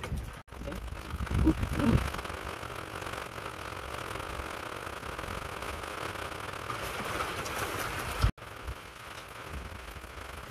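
Steady rain falling, heard as an even hiss that cuts out briefly twice.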